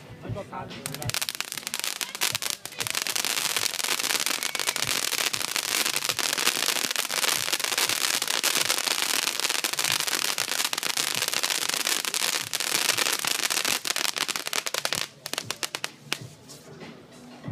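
Crackling pyrotechnic sparks: a dense, rapid, continuous crackle that starts about a second in and stops abruptly about a second before the end, thinning to a few last pops.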